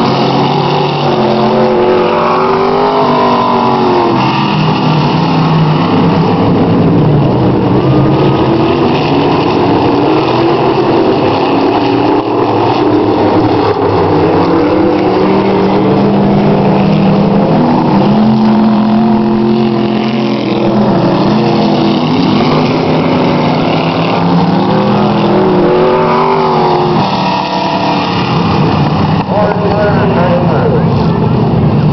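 Several dirt-track modified race cars running laps together. Their engines rise and fall in pitch over and over as the cars accelerate and lift around the oval.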